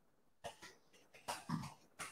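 A person coughing in short bursts, about half a second in and again about a second and a half in.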